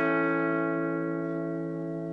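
A chord on a '69 Fender Telecaster, played on its treble pickup through a Line 6 Spider IV amp, ringing out steadily and slowly fading.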